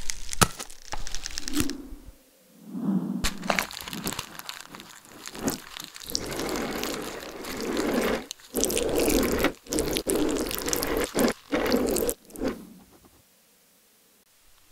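Ballpoint pen scratching and crackling across paper, heard very close up, in uneven stretches broken by sharp clicks, with the densest scraping in the second half and a sudden stop just before the end.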